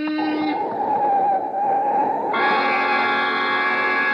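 Radio-drama sound effect of a car striking a pedestrian: a car horn blaring stops about half a second in, followed by tyres screeching. About two seconds in, a loud sustained music sting comes in.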